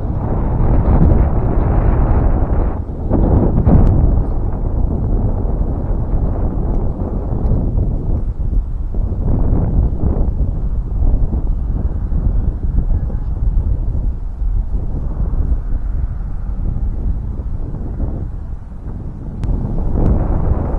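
Wind buffeting the microphone: a loud, low gusting noise that swells and eases throughout.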